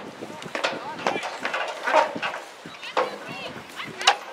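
Indistinct shouts and chatter from several voices of players and spectators at a rugby game, with a few short sharp sounds among them.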